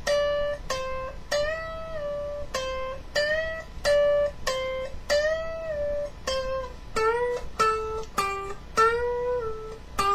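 Electric guitar playing a string-bending exercise: single picked notes about every half second, several bent up in pitch and let back down. The notes move lower from about two-thirds of the way in.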